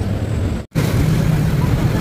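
Busy city street traffic: a steady low rumble of cars and motorbikes. It breaks off for an instant under a second in, then carries on.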